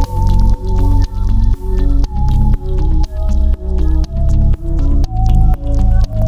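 Electronic synthesizer music: a deep bass pulse about twice a second, each beat swelling and rippling, under short bubbling synth notes and a held high lead tone that steps down in pitch, with light ticks above.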